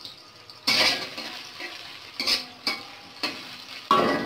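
Sliced onions going into hot oil in an aluminium karai: a loud sizzle starts about a second in. A spatula then stirs and scrapes against the pan, with several short scrapes and clinks toward the end.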